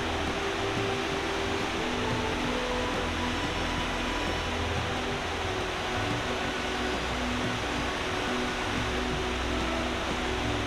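Steady rushing noise of a fast whitewater river, with faint background music notes over it.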